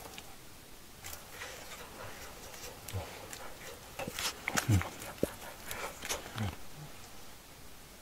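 A person making three short, low grunts that fall in pitch, mixed with crackling clicks and rustling.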